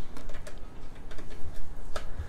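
Small irregular clicks and rattles of quarter-inch jack plugs being pushed into the output sockets on the back of an Alesis Nitro Mesh drum module, with cable handling; a slightly sharper click comes near the end.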